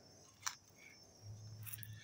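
Faint outdoor background with a steady high-pitched insect drone, a single short click about half a second in, and a faint low hum near the end.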